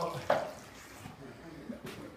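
Faint splashing and dripping of river water churned by a school of fish at the surface.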